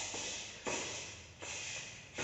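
Karate punches landing on a training partner's body during body-conditioning drills: a few sharp strikes about 0.7 s apart, each trailing off quickly.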